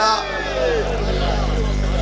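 Several crowd voices calling out fade away in the first half-second, leaving the steady hum and hiss of a public-address system.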